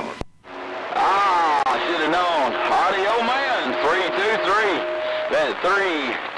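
A voice received over a CB radio, thin and cut off in the highs, its pitch swooping up and down, with a steady whistle tone underneath. It starts after a brief drop-out and a click at the very beginning.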